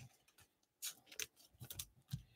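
Faint clicks and light scrapes of baseball trading cards being picked up and shuffled by hand, a few short strokes from about a second in.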